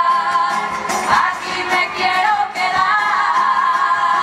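A chorus of women singing together in unison with guitar and drum accompaniment, the percussion keeping a steady beat; near the end they hold a long sustained note.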